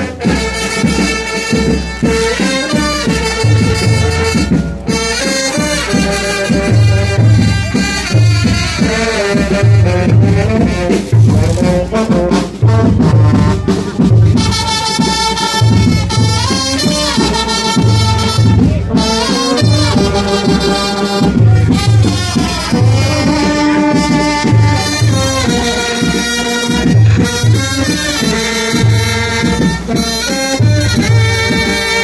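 A Vietnamese kèn tây (Western-style brass) funeral band playing, with horns carrying the melody over a steady low beat.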